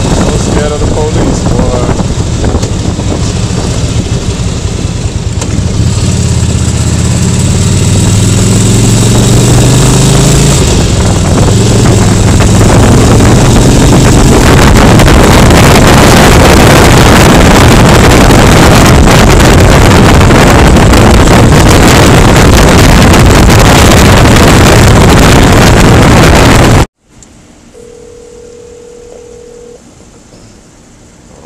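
Motorcycle riding at speed: the engine note climbs as it accelerates, then heavy wind buffeting on the microphone drowns most else. Near the end it cuts off suddenly to a much quieter steady hum with a brief steady tone.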